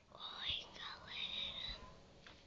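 A person whispering a short phrase.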